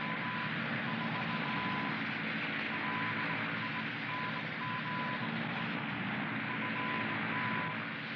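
Engines of a twin-engine de Havilland Mosquito droning steadily in flight, heard from inside the cockpit. A broken, high steady tone sounds on and off over the drone.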